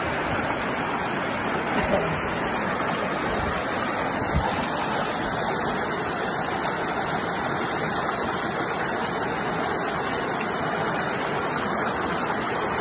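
Fast mountain stream rushing over rocks: a steady, unbroken rush of water.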